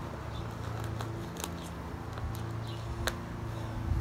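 Thick plastic vacuum-pack bag crinkling as it is handled and slit open with a knife, with a couple of sharp ticks, over a steady low hum.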